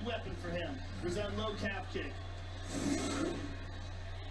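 Faint, distant speech from the fight broadcast playing in the room, over a steady low hum.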